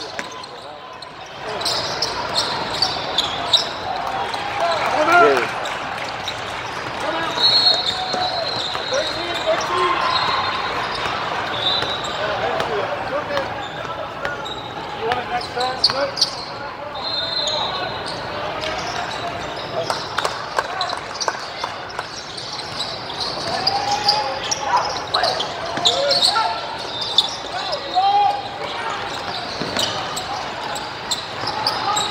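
A basketball game in a large indoor hall: the ball bouncing on the court as players dribble, with brief high squeaks of sneakers and players' and spectators' voices calling in the background.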